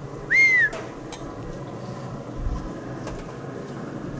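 A single short whistled note about half a second in, rising and then falling in pitch, over a low steady background.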